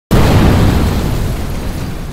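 Sound effect of a loud boom that hits suddenly just after the start, strongest in the low end, and fades slowly, in the manner of a thunderclap.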